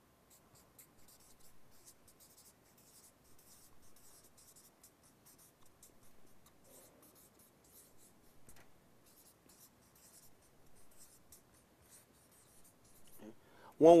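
Felt-tip marker writing on flip-chart paper: faint, short, high scratchy strokes coming in quick runs as words are lettered out, thickest in the first half.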